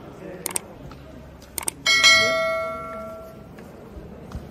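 Subscribe-button animation sound effect: short mouse clicks, then a bright bell ding that rings out and fades over about a second and a half.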